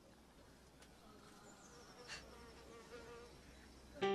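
Near silence: faint hiss with a faint, thin hum through the middle.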